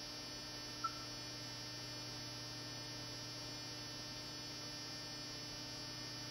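Steady electrical mains hum made of many even, constant tones, with one short faint blip about a second in.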